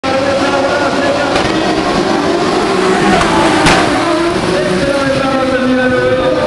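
A field of autocross touring cars launching from the start and accelerating away together, several engines revving over one another, with a sharp crack a little past the middle.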